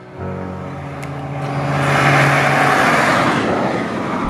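A 1991 Ford Fiesta 1.4 hatchback drives past at speed. Its steady engine note and tyre noise swell as it approaches, are loudest about two seconds in, then fade.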